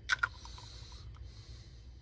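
Two quick plastic clicks from an SS2 condensate float switch as its float height is slid up a notch, over a steady low hum.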